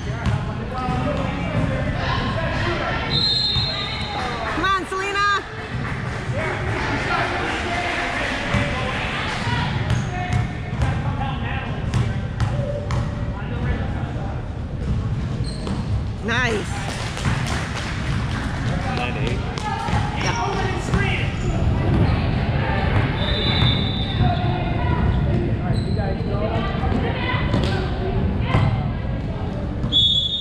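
Basketball game in a large gym: the ball bouncing on the hardwood court and players' feet on the floor, repeated sharp knocks, over a steady background of spectators' voices echoing in the hall.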